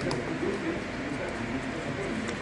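Low, indistinct murmur of men's voices at café tables, with a few faint light clicks.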